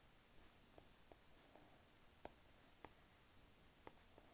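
Faint, irregular taps and light swishes of a stylus tip on an iPad's glass screen while handwriting, against near silence.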